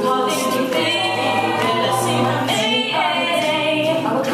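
A mixed a cappella group singing: a female lead voice over the group's vocal backing harmonies, with a held low bass note underneath for about two seconds in the middle.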